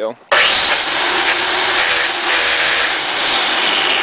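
Electric Black & Decker lawn edger run with its blade against the concrete patio, grinding on the concrete in a loud, steady scraping noise that starts abruptly. Grinding the blade on the concrete throws sparks and ruins the blade.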